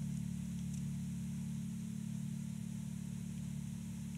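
Fodera Monarch Standard P electric bass through an amp, left ringing with no hands on the strings. The low tone holds steady and fades only slightly, showing the bass's long sustain.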